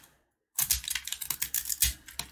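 Utility knife blade scraping and cutting into a dry, crumbly block of soap, making a rapid run of small crackling clicks as flakes break away. It starts about half a second in, after a moment of silence.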